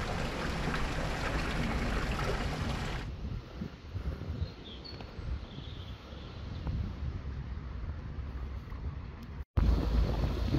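Wind buffeting the microphone outdoors: a loud, even rushing hiss for about three seconds, then a quieter, low rumble. A brief dropout comes near the end.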